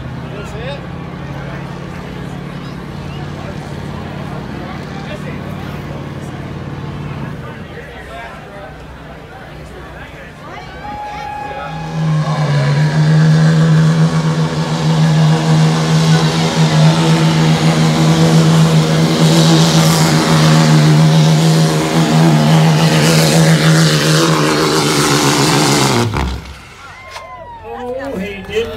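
Street-class diesel pickup truck engine at a truck pull: a low steady idle at first, then, about twelve seconds in, held at full throttle under the load of the sled with a loud, steady tone for about fourteen seconds, before the revs drop and it cuts off abruptly at the end of the pull.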